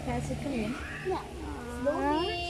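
Quiet voices over a low, steady hum.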